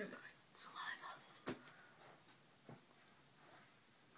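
Faint whispering, then a sharp knock about one and a half seconds in and a softer one near three seconds, from a child climbing down off a metal-framed bunk bed.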